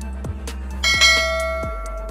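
Background electronic music with a steady kick-drum beat. Just under a second in, a bright bell chime sound effect rings out loudly and fades: the notification-bell sound of a subscribe-button animation.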